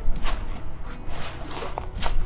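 Several short rustles and clicks of canvas tent fabric being pulled down and fastened at its edge, over faint background music.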